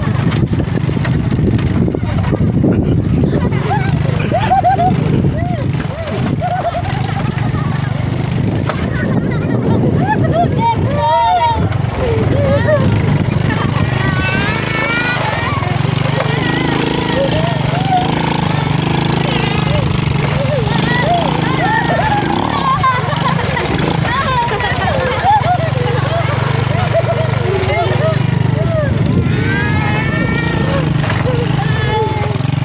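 The small engine of a Suzuki underbone motorcycle pulling a passenger sidecar runs steadily as it is ridden over rough dirt. Children's voices call out over it throughout.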